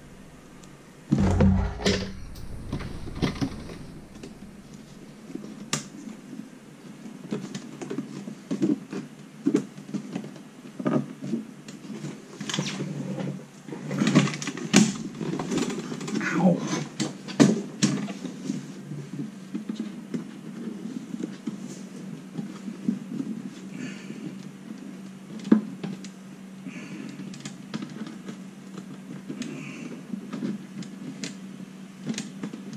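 Hands working a toaster oven's metal body and its insulation: scattered clicks, knocks and rustles, with a heavier bump a second or two in, over a steady low hum.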